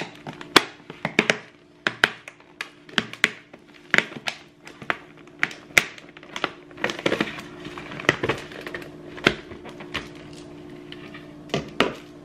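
Clear plastic cake container being handled and its dome lid pried off: a quick, irregular run of sharp plastic clicks, snaps and crackles.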